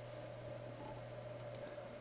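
Low room tone with a steady electrical hum from the recording setup, and two faint short clicks about one and a half seconds in.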